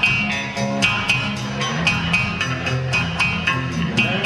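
Live rock band playing an instrumental passage: electric guitars and bass over a steady drumbeat of about four strokes a second.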